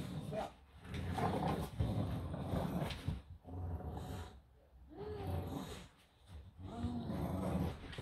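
English bulldogs growling while tugging on a towel in play, in several bouts of a second or two with short pauses between.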